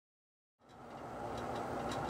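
Silence for about half a second, then a steady low rushing background noise fades in and grows louder.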